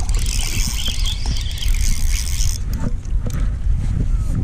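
A small hooked largemouth bass splashing and thrashing at the water's surface for about two and a half seconds, over a steady wind rumble on the microphone. A few light knocks follow as it comes up onto the bank.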